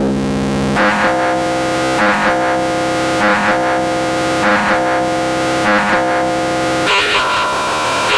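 Eurorack modular synthesizer playing a sustained drone: a stack of steady tones that shifts to new pitches about a second in and again near the end, with a brighter pulse about every 1.2 seconds.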